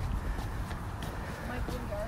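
Footsteps on brick paving at a steady walking pace, under a low rumble on the microphone.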